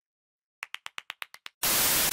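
A quick run of about eight short clicks, growing fainter, then a loud burst of TV static hiss: a glitch transition sound effect.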